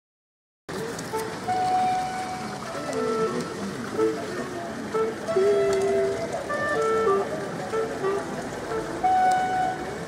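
A brief dropout in the first half-second, then street traffic noise with a simple melody of held notes playing over it.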